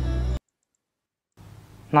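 A man's speech over a steady background tone cuts off abruptly, then about a second of dead silence, then faint background noise before another voice begins at the very end.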